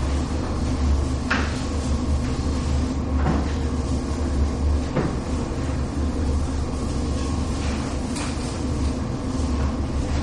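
A chalkboard duster being rubbed across a blackboard in repeated wiping strokes, with a few sharp knocks, over a steady low hum.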